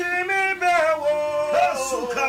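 A man singing unaccompanied, holding long notes that bend and slide in pitch.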